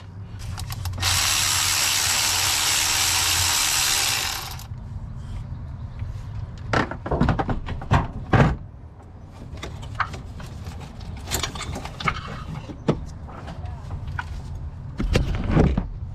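A handheld power tool, drill-type, runs steadily for about three and a half seconds starting a second in. After it come irregular clicks and knocks of metal parts and hardware being handled as bracketry is taken off the engine.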